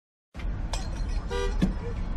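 A car horn gives one short honk about a second in, over the low rumble of a car in traffic heard from inside the cabin.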